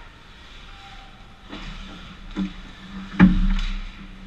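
Ice hockey play heard close to the net: a couple of light knocks of sticks and puck, then a loud sharp impact about three seconds in with a low rumble after it, as players crash the crease.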